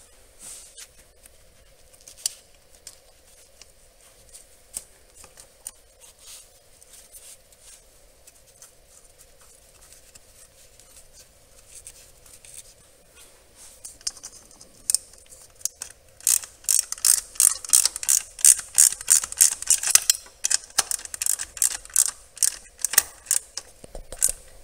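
Ratchet wrench clicking in quick runs, about four clicks a second, over the last eight seconds as the 8 mm bolt holding the vacuum reservoir is run in. Before that, only occasional light clicks and knocks of parts being handled, over a faint steady hum.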